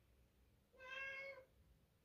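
A part-Siamese house cat giving a single faint, even-pitched meow about two-thirds of a second long, a little under a second in.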